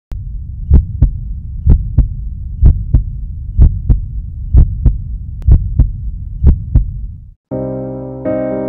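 Heartbeat sound effect: a slow, steady double thump about once a second over a low hum. It stops shortly before the end, and piano chords begin.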